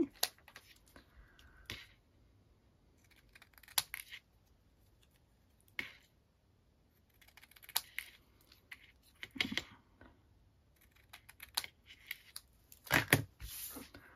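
Small craft scissors snipping a small piece of cardstock, a few separate quiet cuts spread out with pauses, along with light clicks and rustles of the paper being handled.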